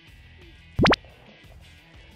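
A short, loud cartoon 'bloop' sound effect sweeping quickly upward in pitch a little before the middle, over quiet background music.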